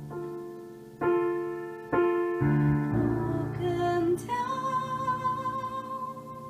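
Digital piano playing a soul ballad, a new chord struck about once a second. Near the end a woman's voice comes in, holding one long note over the piano.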